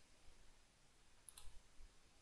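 Near silence with a few faint clicks about a second and a half in, a computer mouse clicking to advance a slide animation.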